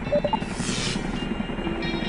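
Tandem-rotor Chinook helicopter flying, its rotors making a steady, rapid, low beating chop, with background music underneath.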